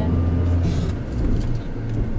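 Car driving, a steady low rumble of engine and tyres heard from inside the cabin.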